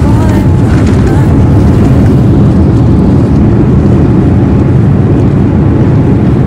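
Loud, steady rumble inside a Boeing 787 airliner's cabin as it rolls along the runway on arrival: engine and rolling noise heard through the fuselage.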